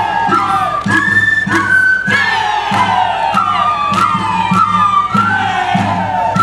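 Andean folk dance music played live: a high held melody over a drum struck about twice a second. Long falling shouts ring out over it several times, with crowd noise underneath.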